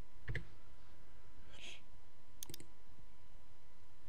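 A few computer mouse clicks: one about a third of a second in, then a quick pair a little past halfway, over a quiet steady background.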